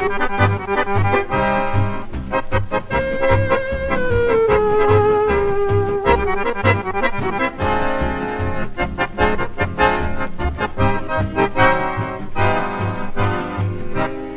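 Accordion fox-trot played from a Telefunken 78 rpm record: a solo accordion carries the melody with held, sliding notes over a small dance band's steady bass beat.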